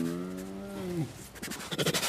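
A tiger giving one long, even-pitched call that ends about a second in.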